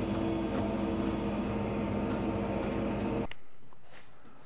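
Fendt tractor engine running steadily, heard from inside the cab while it pulls a slurry tanker. The drone cuts off suddenly a little over three seconds in, leaving a faint low hum.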